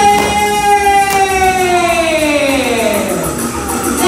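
A woman's voice through a microphone and PA holding one long high note, steady at first, then sliding down in pitch in the second half.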